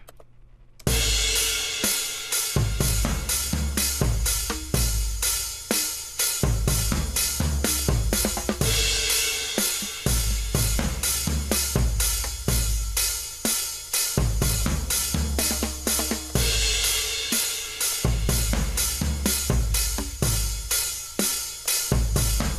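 Programmed beat from the Addictive Drums virtual drum kit: kick, snare, hi-hat and cymbals looping in an even, repeating pattern that starts about a second in. As the loop plays, the snare sample is switched from one modelled snare to another, ending on a 14x5 Ludwig Vintage.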